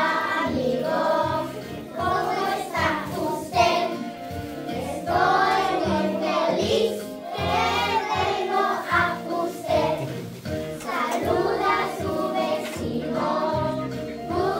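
A group of young children singing a song together over music with a steady bass accompaniment.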